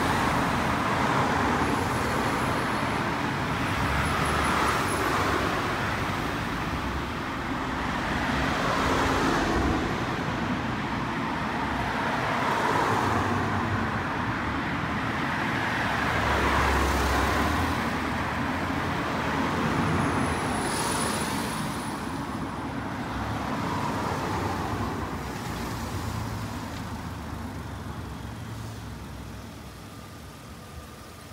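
Road traffic on a street, with cars passing one after another so that the noise swells and fades every few seconds. A faint high whine comes in briefly twice, a couple of seconds in and about twenty seconds in.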